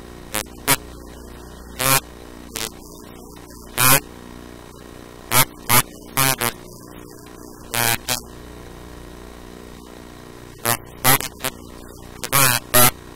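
A voice speaking in short, separate syllables with pauses between them, over a steady electrical hum.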